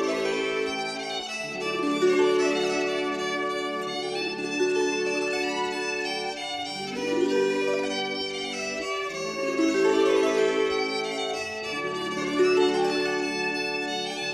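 Instrumental Piedmontese folk dance music from a 1979 studio recording, with a violin carrying the tune over held lower notes that change every second or two.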